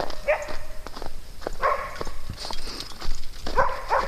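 A dog barking a few short barks, over the steady crunch of footsteps in snow.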